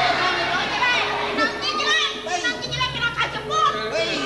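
Animated, high-pitched voices overlapping: a man's voice calling out in Balinese stage speech amid other voices, with a steady hum underneath.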